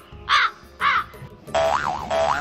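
Crow caws: two harsh caws about half a second apart, following one just before. About a second and a half in, a wobbling cartoon boing tone starts, sliding up and down in pitch.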